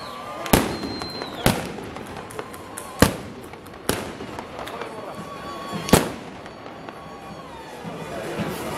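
Black-powder guns fired by a line of men in a ceremonial salute: five sharp reports spread over about six seconds, the loudest about three seconds in, over a steady crowd murmur.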